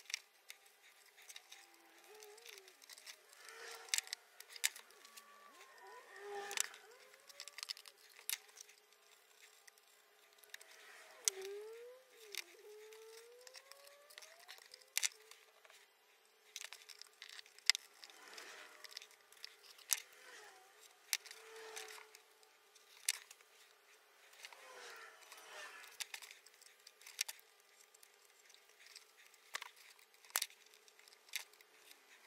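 Faint, scattered clicks and light taps of small hand tools and book cloth being handled while the cloth turn-ins of a board slipcase are trimmed and folded.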